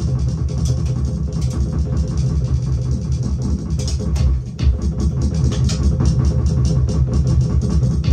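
Paradiddle-based drum solo on a large drum kit: a fast, dense stream of strokes with a heavy low end.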